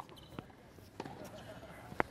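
A couple of faint, short knocks of a tennis ball bouncing on a hard court.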